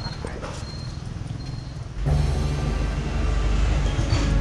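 Background music comes in abruptly about halfway through, heavy on deep bass notes. Before it there is only faint outdoor background noise with short high chirps repeating about every half second.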